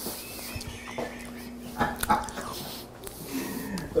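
A person quietly chewing a mouthful of beef and rice, with a few light clicks of a fork against the bowl, a faint steady hum underneath and a soft murmur near the end.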